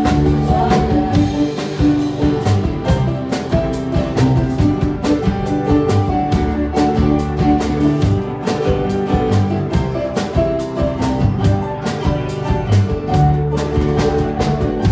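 Live band playing a song: strummed acoustic guitar over a steady drum-kit beat, with keyboard.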